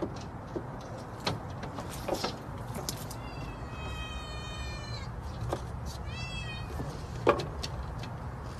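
A kitten meowing twice: a long, high meow about three seconds in, then a shorter, arched one around six seconds. A few sharp clicks come between, the loudest near the end.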